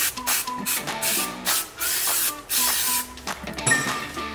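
Aerosol can of brake cleaner spraying in several short bursts onto a brake disc hub, over background music.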